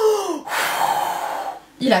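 A woman blowing out one long, forceful breath lasting about a second, a vocal sound effect imitating the wolf blowing on the house.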